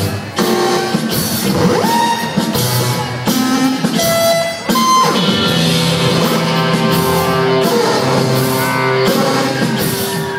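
Live rock band playing a song intro: electric guitar and drums under held notes and sliding, gliding pitches from a synth, the Bebot app played on an iPhone.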